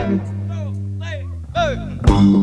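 Live blues band on a break: a low note is held and rings for about a second and a half, with a few short bending notes above it. The full band comes back in at the end.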